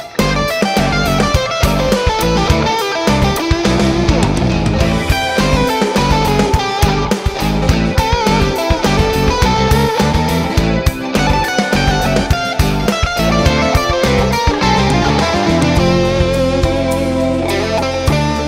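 Several layered electric guitar parts, played on a guitar with Lollar Gold Foil pickups through a Vox AC30 amp, in a rock track: a choppy rhythm part under moving melody lines, settling into held, ringing notes near the end.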